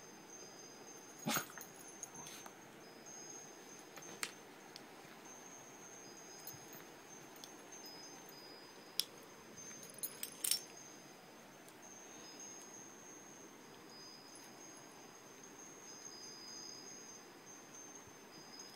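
Metal pet collar tags jingling and clinking as a cat and a corgi play, with a few sharper clinks about a second in, around four seconds in, and twice around nine to ten seconds in.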